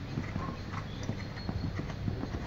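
Hoofbeats of a bay stallion cantering on a sand arena surface: a steady run of low, dull thuds.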